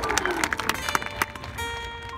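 Crowd applause tailing off, then a marching band's front ensemble starting a soft passage: sustained ringing mallet-keyboard notes coming in about a second and a half in.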